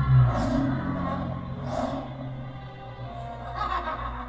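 Dramatic theme music from an animated show's opening title sequence, with a steady low bass note underneath and short swells rising over it several times.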